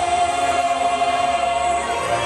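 Show soundtrack music: a choir holding one long note over orchestral backing.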